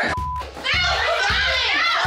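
Several women yelling and screaming over each other in a fight, with background music underneath. A short steady censor bleep sounds right at the start, then a brief lull before the shouting comes back in full.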